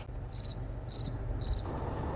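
Cricket chirping sound effect: three short, high, trilling chirps about half a second apart over a faint low hum, the stock comic cue for an awkward silence.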